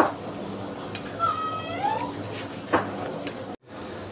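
Steady hiss of a portable gas stove burner under a wok of boiling water, with a metal wire skimmer knocking once against the pan a little after the middle. A brief high-pitched call sounds in the background about a second in.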